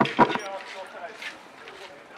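A station public-address loudspeaker finishes an announcement in the first half second, followed by faint voices of people and general outdoor hubbub.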